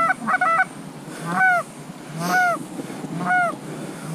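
Goose honks: a quick run of short clucking calls at the start, then single drawn-out honks about once a second.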